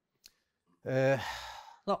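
A man's drawn-out, breathy voiced sigh, about a second long and falling slightly in pitch, comes after a brief pause. A short word follows near the end.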